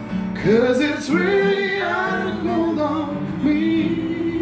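Voices singing to a strummed acoustic guitar. The singing swoops up about half a second in and ends on a long held note.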